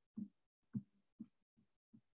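Near silence in video-call audio, broken by four faint, brief low thumps roughly half a second apart.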